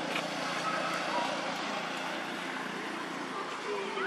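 Steady outdoor background noise with faint, indistinct distant voices.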